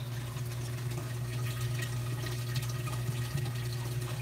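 Water running and trickling through a homemade saltwater aquarium sump and refugium, steady throughout, over a constant low hum.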